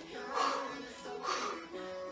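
Background workout music with sustained tones, with a short breathy burst about once a second in time with the exercise.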